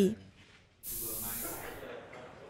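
A brief near-silent gap, then a steady hiss with a faint murmur under it starts abruptly about a second in and slowly fades: the background noise of a location recording.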